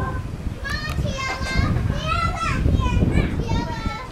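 Children's high-pitched voices calling and chattering, several short calls one after another, over a low rumble.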